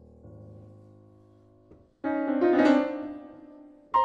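Grand piano playing a contemporary piano sonata. Soft held chords fade away, then about halfway through comes a sudden loud cluster of many notes, and a sharp accented chord lands at the very end.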